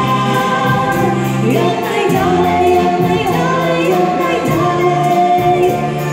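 Wind band of brass and saxophones playing a slow Christmas carol in held chords, with voices singing along.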